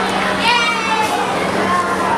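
Children's voices calling out, with one high-pitched shout about half a second in, over a steady low hum.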